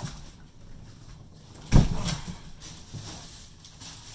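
A large cardboard box being opened and a plastic-wrapped goalie blocker lifted out: quiet rustling of cardboard and plastic, with a single sharp thump a little under two seconds in.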